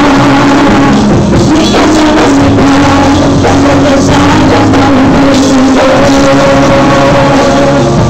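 Live worship music: several women singing a Spanish-language praise song into microphones, backed by a band with electric bass guitar and drums, recorded loud.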